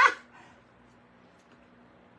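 A single short, sharp dog bark right at the start, followed by quiet room tone with a faint steady hum.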